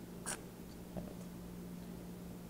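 Quiet room tone with a low steady hum. A brief scratchy rustle sounds about a third of a second in, and a faint tick about a second in.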